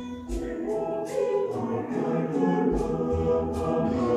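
A mixed choir singing in parts, the voices swelling about a second in, with two deep drum thuds underneath.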